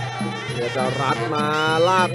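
Traditional Muay Thai fight music (sarama), led by the nasal, reedy pi java (Thai oboe) playing a wavering melody, then holding one long note near the end.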